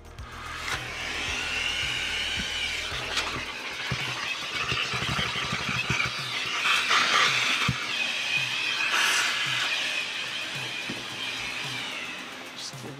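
Vacuum cleaner running through a hose with a soft-bristle dust brush, a steady suction hiss that swells and eases as the brush is worked over the plastic vacuum housing to pull dust off it.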